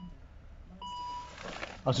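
Volvo XC60 dashboard warning chime: a single short electronic beep about a second in, sounding as the start button is pressed without the clutch pedal down on this manual-gearbox car.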